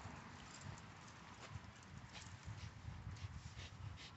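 A pit bull hanging on a rope tug hung from a tree, tugging: faint uneven low grunting that swells in the second half, with scattered short clicks and rustles from the rope and her paws on the grass.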